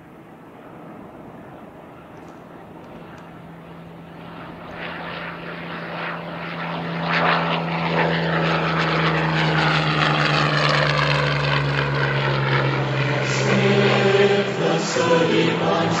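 A propeller-driven aircraft engine droning steadily, growing louder over the first half and then holding at full level.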